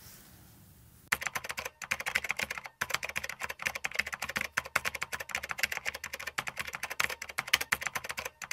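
Rapid keyboard typing sound effect, a dense run of quick clicks with a few brief breaks, starting about a second in after a moment of near silence. It accompanies on-screen title text being typed out.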